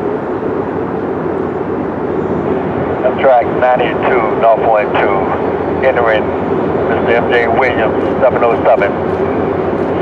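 Steady, even rumble of a large vehicle running past. From about three seconds in, a voice on a two-way radio talks in short bursts over it.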